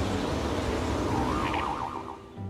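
Cartoon sound effect of a rushing gust of wind, an airbending blast, with a wavering tone over it from about a second in.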